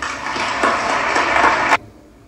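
Audience applause on an old live concert recording being played back. It cuts off abruptly about three-quarters of the way through.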